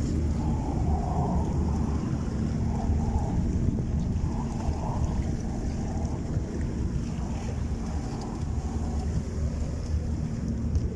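A boat engine running steadily with a low, even hum, over a haze of wind and water noise.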